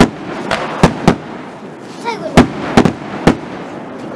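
Firework shells bursting overhead: a quick, uneven series of about seven sharp bangs.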